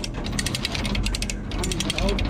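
Hand-operated come-along ratcheting in a fast, even run of clicks as its lever is pumped. It is winching a riding mower with locked-up wheels up onto a trailer.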